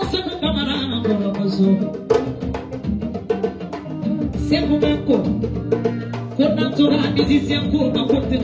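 A woman singing into a handheld microphone, accompanied by rapid hand drumming on a djembe.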